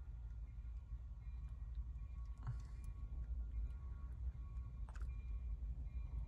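Low, steady engine rumble heard from inside a car cabin, with faint clicks about two and a half and five seconds in.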